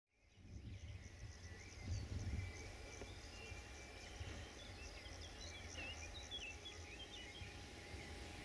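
Faint countryside ambience fading in: birds chirping and a steady high insect trill, over a low rumble that swells about two seconds in.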